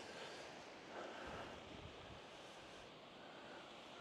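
Faint, steady wind noise on the microphone, close to silence, with a slight swell about a second in.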